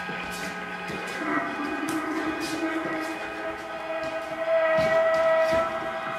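Live improvised noise music: a dense drone of sustained tones, with a lower tone sliding in about a second in and a brighter tone swelling louder from about four and a half seconds, over scattered taps and clicks.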